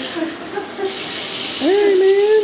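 Tap water running into a bathtub, a steady hiss that starts about a second in. Near the end, a short pitched voice rises, holds and falls over the water.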